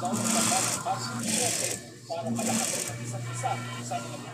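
Sewing machine running in short bursts about once a second over a steady low hum, with faint talk behind it.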